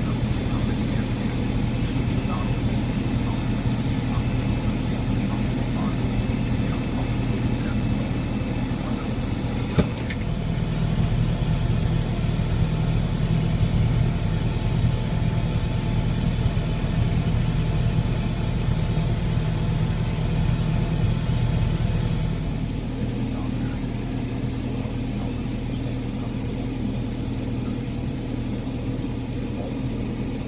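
Fendt Vario tractor engine running steadily at low working revs, about 1180 rpm, heard inside the cab while pulling a field sprayer at walking pace. A single sharp click about ten seconds in.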